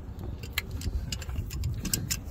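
A few light, uneven metallic clicks and clinks from a pair of tongue-and-groove pliers being handled, over a low steady background rumble.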